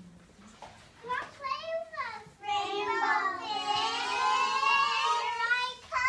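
A young child's high-pitched voice: a few short utterances about a second in, then one long drawn-out call lasting over three seconds.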